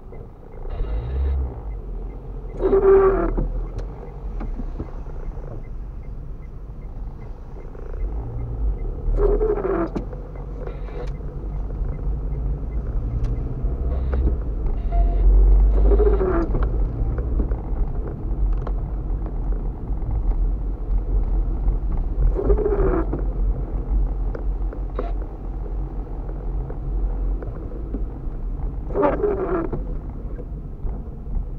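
A car's windscreen wipers sweeping across wet glass on the intermittent setting, one sweep about every six and a half seconds. Each sweep gives a short, falling squeal of rubber on glass. Under it runs a steady low rumble of the car driving on a wet road.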